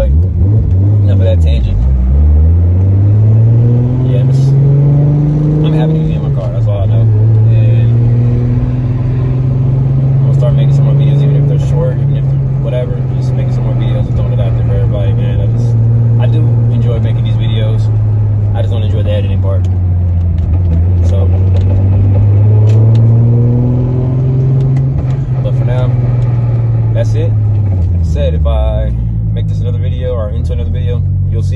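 A car engine of about 600 to 700 horsepower, driven through a T-56 six-speed manual, heard from inside the cabin. Its pitch climbs hard in the first few seconds, drops suddenly at a gear change about six seconds in, and then cruises steadily. It rises again after about twenty seconds and falls away near the end before picking up once more.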